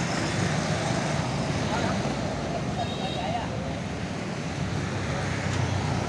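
Diesel engine of a large express coach bus running with a steady low drone as the bus moves off slowly, mixed with street traffic noise.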